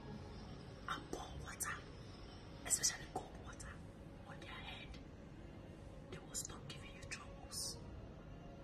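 A woman whispering, faint and hushed, in short breathy bursts with pauses between.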